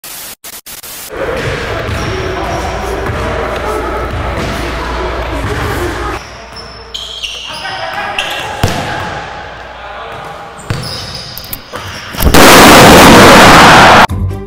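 Basketballs bouncing and players' voices echoing in an indoor gym, after a few sharp glitchy clicks at the start. Near the end a very loud, harsh burst of noise takes over for under two seconds.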